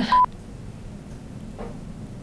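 A single short electronic beep, a steady pitch of about 1 kHz lasting about a tenth of a second, just after the start, followed by quiet room tone.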